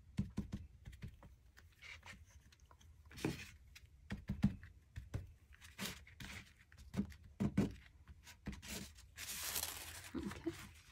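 Paintbrush working matte medium over thin napkin paper: soft scratchy strokes and taps, with paper crinkling and a longer rustle near the end.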